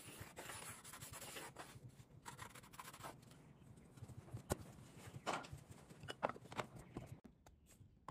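Faint pencil scratching on wood as a circle is traced around a template onto a wood blank, followed by a few light knocks and clicks as the block is handled.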